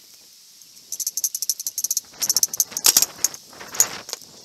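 Wooden coffee-table leg frame being handled and shifted against the table top: a run of quick light clicks, then louder knocks and rattles, the loudest about three seconds in and again just before the end.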